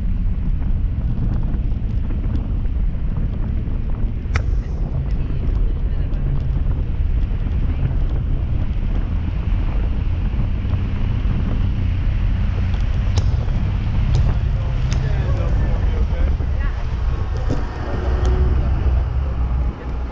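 Wind buffeting the microphone of a camera on a parasail tow bar, a loud steady low rumble with a few sharp clicks. Faint voices and boat sounds come in near the end as the riders reach the tow boat's deck.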